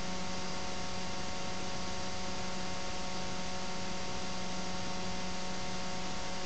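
Steady electrical hum over a constant hiss, with no other sound.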